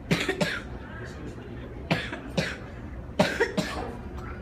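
A person coughing in three bouts, each a pair of quick coughs, about a second and a half apart.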